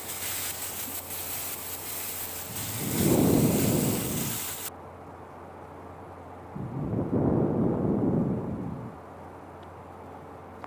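Potato and aubergine pieces sizzling in oil in a kadai, a steady hiss that stops abruptly about halfway through. Two low rumbling swells, each about two seconds long, come about three and seven seconds in.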